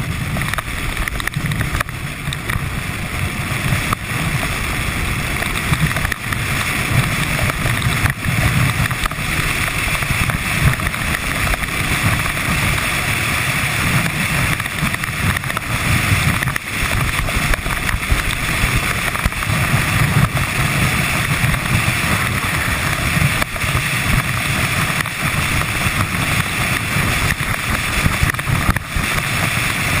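Skeleton sled sliding at speed down an ice track, heard from onboard: the steel runners on the ice and the rushing air make a steady, loud rumble and hiss, with wind buffeting the microphone.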